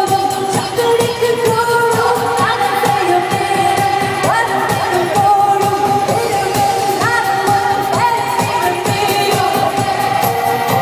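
Live Tamil film pop song played by a band on a concert sound system: a woman singing held, gliding notes into a microphone over a steady drum beat, heard from the audience in a large hall.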